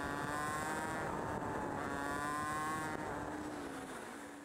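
Honda CT110's single-cylinder four-stroke engine running under way, with road and wind noise. Its pitch sags and then steps back up about halfway through. The sound fades out near the end.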